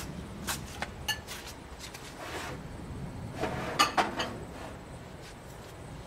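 Handling noise as a hand-held camera is moved, scattered clicks and a soft rustle, over a low steady outdoor rumble.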